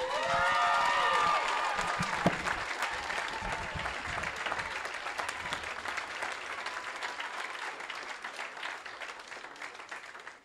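Banquet audience applauding an inductee's introduction, with a cheer from the crowd in the first couple of seconds; the clapping slowly dies away.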